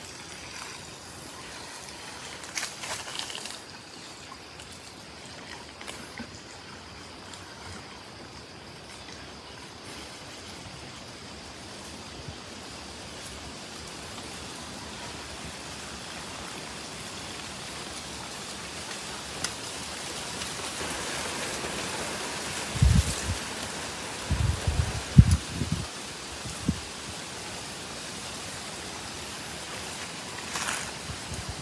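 Water pouring from a plastic watering can onto dry soil, a steady trickling splash. A few low thumps come about three-quarters of the way through.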